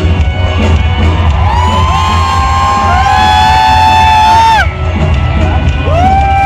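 Live band music played loud through a concert PA, with a steady heavy bass under it. A long high note is held from about a second and a half in until near the end, as the crowd cheers.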